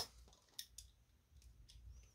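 Cardboard coin holders and a clear plastic coin-album page being handled: one sharp click right at the start, then a few faint light ticks.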